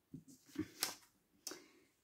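Cards being handled on a table: about four short, light clicks and taps as cards are picked up and slid over the spread deck.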